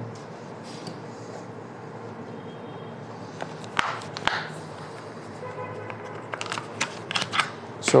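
Light handling clicks over a steady room hum. A wristwatch with a metal mesh strap is set down on a desk pad with a couple of sharp clicks about four seconds in. A small flashlight is then picked up, giving a run of quick clicks and taps near the end.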